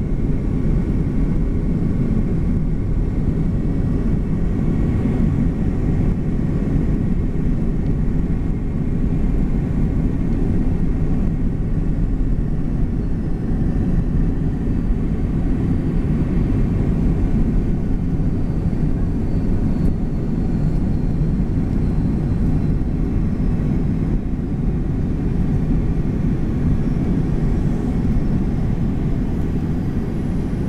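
Cabin noise of an Airbus A300 taxiing after landing: a steady low rumble from the jet engines and rolling wheels, heard inside the cabin, with a faint thin whine above it.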